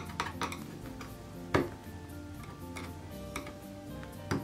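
Thin knife blade scraping and clicking against the hard plastic part inside a camp table's folding hinge joint, shaving down a part deformed by forced raising and lowering. Irregular scrapes and clicks, the sharpest about a second and a half in, over background music.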